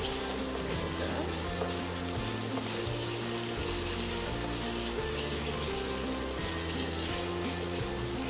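Chopped onion and garlic sizzling in oil in a frying pan, under background music of slow, held low notes.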